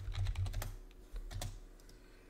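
Computer keyboard being typed on: a short run of quick keystrokes, then a couple more, as a word is entered.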